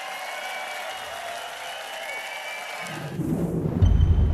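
Soft sustained music under the closing credits, then about three seconds in a deep bass swell that builds to the loudest point near the end: a TV channel's logo sting.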